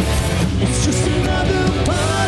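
Live rock band playing: electric guitars over bass and drums, with the lead singer singing into the microphone.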